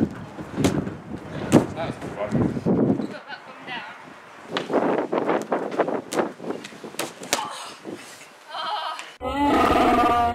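Chewbacca's Wookiee roar as a sound effect near the end, a loud growling call lasting about a second. Before it come thumps of tumbling on an air track and voices.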